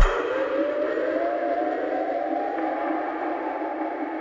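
Drum and bass DJ mix dropping into a breakdown: the bass and drums cut out suddenly and a siren-like synth tone rises in pitch over about two seconds, then holds, over a muffled pad.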